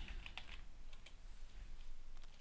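Computer keyboard keys pressed to type a password: a handful of faint, separate keystrokes.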